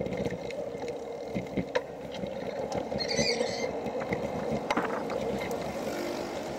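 A motor vehicle running steadily as it travels along a street: a continuous drone over rumbling road noise, with a brief hiss about halfway through.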